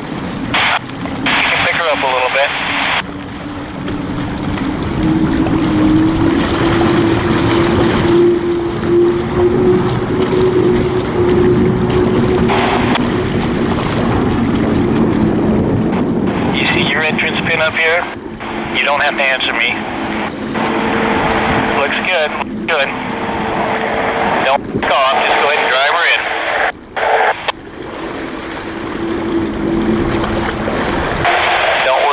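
U-5 Graham Trucking unlimited hydroplane's turbine engine running at speed, a steady roar with a whine that climbs slowly in pitch.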